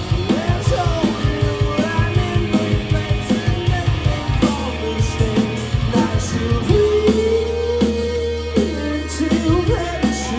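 Live rock band playing amplified electric guitars and a drum kit, with a sung vocal line. A fast, driving drum beat runs through the first half, then gives way to sustained, held chords.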